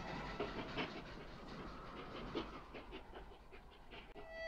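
A pause in the harmonica music, filled with faint, irregular clicks and rustles that fade away.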